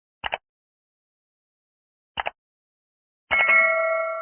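Two mouse-click sound effects, each a quick double click, about two seconds apart, then a bright bell ding a little over three seconds in that rings on and slowly fades. These are the sound effects of an animated subscribe prompt: clicking like, clicking subscribe, then the notification bell.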